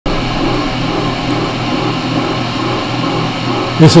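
Beaver slotting attachment on a turret milling machine running, a steady mechanical hum from its motor and drive.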